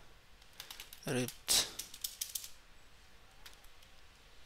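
Computer keyboard typing: short runs of light keystroke clicks, with a brief spoken syllable and breath about a second in.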